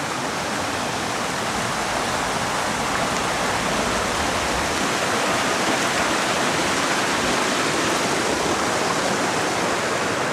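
Steady rushing of a small stream flowing under a wooden footbridge.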